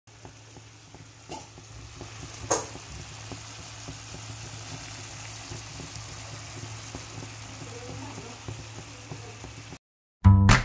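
Shrimp and cherry-tomato sauce simmering in a frying pan on a gas hob: a steady hiss with scattered small pops over a low steady hum, and one sharp click about two and a half seconds in. The sound cuts off just before the end.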